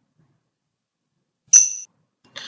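Near silence, then about one and a half seconds in a single short, high computer notification chime that rings briefly and fades. It sounds as a pop-up appears confirming that the asset has been created.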